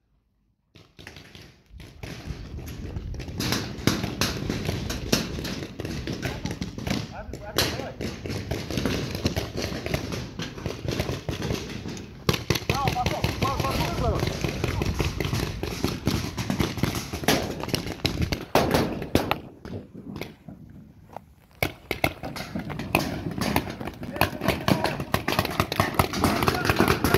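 Paintball markers firing many quick shots, sharp pops coming in bursts, starting about two seconds in and running on through the round.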